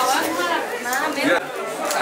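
Several people talking at once: overlapping speech and chatter.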